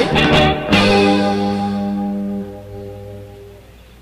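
A rock band with electric guitars, bass, keys and drums ends the song: one last chord is struck under a second in and left to ring, fading out.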